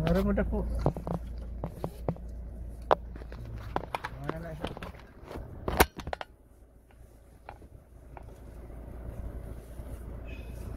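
Inside a car: low cabin rumble with scattered clicks and knocks and brief voices. A sharp knock comes about six seconds in, after which the rumble drops away and it goes much quieter.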